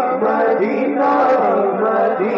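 A man singing an Urdu naat into a microphone, drawing out long melodic held notes that slide between pitches, unaccompanied, in a chanting style.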